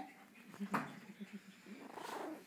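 Miniature pinscher puppies making short yips and low grunting sounds, with one sharp sudden sound about three-quarters of a second in.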